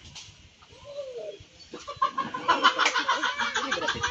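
Chickens clucking, quiet at first and louder with quick repeated calls from about two seconds in.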